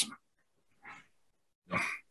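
A pause in a man's talk: a faint breath about a second in, then a short, soft vocal sound near the end.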